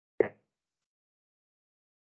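A single short, soft pop about a fifth of a second in, then nothing.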